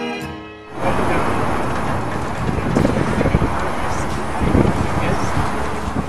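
Background music ends within the first second, then outdoor location sound cuts in: wind buffeting the microphone with a low rumble, and faint voices in the background.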